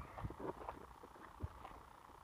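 Faint low wind rumble on the microphone with light handling noise, and one soft low thump about one and a half seconds in.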